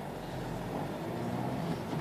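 Volkswagen Golf 7's 1.6 TDI four-cylinder turbodiesel heard from inside the cabin, running steadily at low revs as the car pulls away from a stop in first gear.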